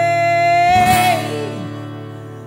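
A woman's voice holds one long sung note over a strummed acoustic guitar chord. The note ends a little past a second in, and the guitar chord rings on and fades.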